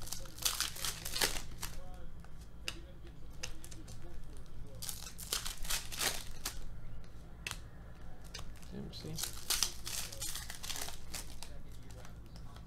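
Foil trading-card pack wrappers crinkling and tearing as packs are opened and handled, in bursts of sharp crackles every few seconds, over a low steady hum.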